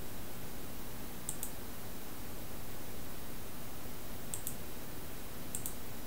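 Computer mouse clicking in three quick double clicks, about a second in, past four seconds and near the end, over a steady background hiss.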